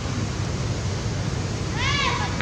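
Long-tailed macaque giving a short, high-pitched, meow-like cry that rises and falls in pitch near the end, over a steady background hiss.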